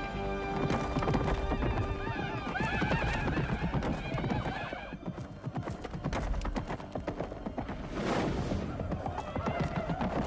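Horses galloping with a rapid clatter of hooves, and horses whinnying from about two to five seconds in, over film score music.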